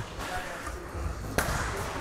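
Low background noise of a large training hall, with a single sharp knock about one and a half seconds in.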